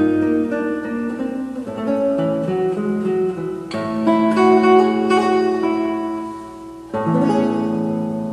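Classical nylon-string guitar playing a slow solo melody over chords. A full chord is struck about a second before the end and left to ring, fading away as the piece's final chord.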